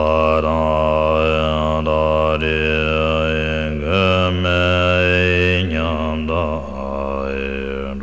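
Deep male voice chanting a Tibetan Buddhist prayer to Guru Rinpoche in long, drawn-out notes. The vowel sound shifts slowly within each note. The pitch steps up about four seconds in and falls back just before six seconds.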